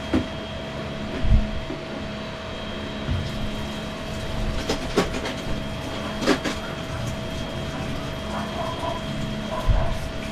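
Plastic toys clattering and knocking as a child handles them in plastic storage bins, with scattered clicks and a few dull thumps, over a steady hum.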